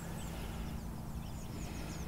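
Small birds chirping repeatedly in short, quick phrases over a low steady hum and rumble.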